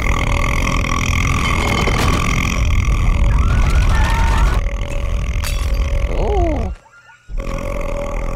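An animated alien's long, loud cartoon burp, held on a steady pitch with a deep rumble for several seconds. Its tail drops in pitch and then cuts off suddenly about seven seconds in.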